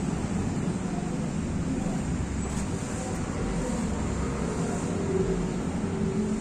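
A steady low rumbling background noise that stays even in level throughout, with no distinct knocks or clicks.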